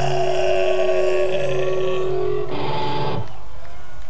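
Distorted electric guitars and bass of a live metal band ringing out held notes as a song ends, one note sliding slowly down in pitch. A last short chord comes about two and a half seconds in and cuts off, leaving the amplifiers' hum.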